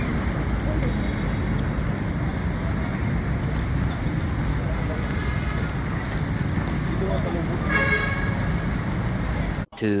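Road traffic noise with a steady low rumble on the microphone, and a brief vehicle horn toot about eight seconds in.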